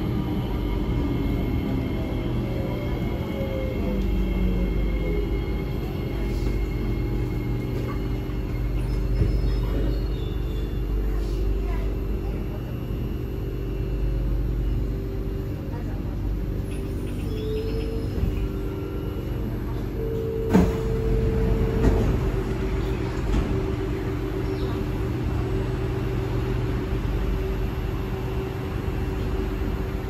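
Cabin sound of a C751B MRT train slowing into a station: a steady rumble with electric motor tones that fall in pitch over the first few seconds, and a sharp knock about two-thirds of the way through.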